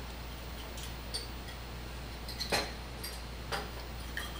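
A few faint, light clicks of glass test tubes being handled in a glass beaker, spread over the few seconds, the clearest about halfway through, over a steady low hum.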